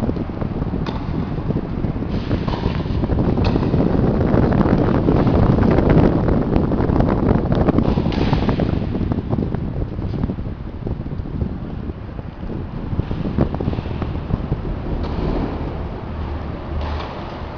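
Loud low rumbling noise on the microphone, like wind buffeting, swelling and easing off through the middle, with a few faint sharp knocks through it.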